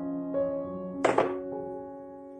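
Soft background music with held piano-like tones; about a second in, a brief double knock, a handheld mesh sieve being tapped to sift flour into the bowl.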